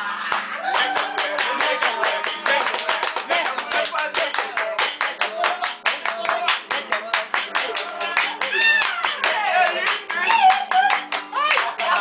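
Acoustic guitar strummed in a swingueira (Bahian pagode) groove, with fast hand clapping throughout and voices singing and calling out over it.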